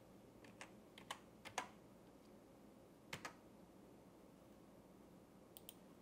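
A handful of faint computer keyboard keystrokes and mouse clicks over near silence: several taps in the first two seconds, two more about three seconds in and two faint ticks near the end.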